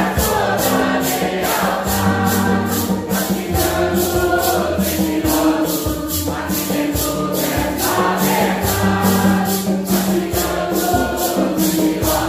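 Mixed congregation choir singing a Santo Daime hymn in Portuguese in unison, with maracas shaken in a steady, even beat, accompanied by strummed guitars.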